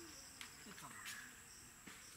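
Faint, steady, high-pitched insect chirring in the field, typical of crickets, with a few faint distant voices.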